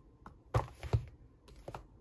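Paperback books being handled and set down on a desk: a few short knocks, the two loudest about half a second and a second in.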